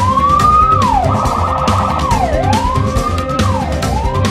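Police car siren wailing, its pitch rising and falling in slow sweeps, with a brief rapid warble about a second in, over background music with a steady beat.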